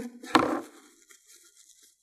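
Paper towel rustling as it is pressed and squeezed around a glue-soaked crochet-thread ball to blot off the excess glue. There is one sharp rustle about a third of a second in, then only faint, soft crinkling.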